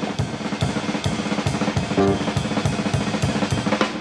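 Jazz drum kit break in a big band swing tune: a rapid, irregular run of snare, bass drum and cymbal strikes played with the horns dropped out.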